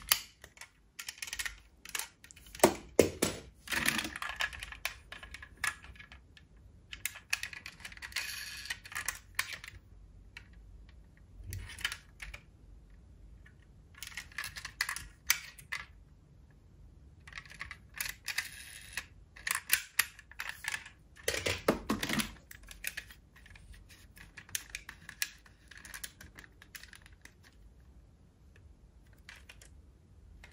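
Diecast metal toy cars being handled over a plastic storage box full of more cars: small doors clicking open and shut and metal bodies clattering against one another, in irregular bursts of clicks with quieter gaps between and a few louder knocks.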